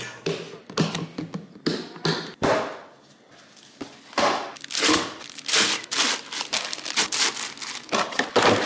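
Boil-in-bag rice packets shaken out of a cardboard box into a clear plastic food storage container: plastic bags crinkling, rice rustling inside them, and taps and thunks against the box and container. The handling is loudest in the second half.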